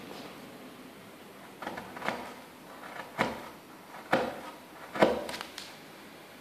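Steel carving gouge pushed by hand through a soft wood-pulp ornament: five short cuts, roughly one a second, starting about a second and a half in.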